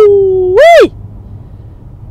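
A woman's drawn-out, high "woo!" of excitement, ending with a quick upward-then-downward swoop a little under a second in. After it only a low steady rumble inside the car cabin remains.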